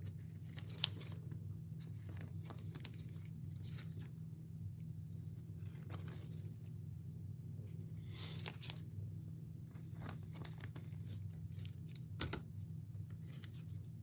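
Scattered soft rustles and clicks of trading cards being handled and slid into plastic sleeves and toploaders, over a steady low hum.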